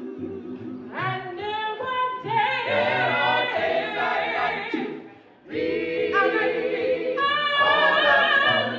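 Church vocal group singing gospel a cappella in harmony, voices only, with vibrato on held notes and a short break about five seconds in before the voices come back in.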